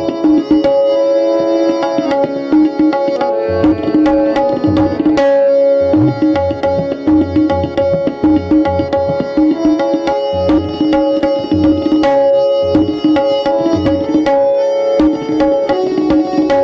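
Tabla solo in teentaal: fast, dense strokes on the tabla, with the low bass strokes of the bayan coming and going, over a harmonium holding the lehra melody.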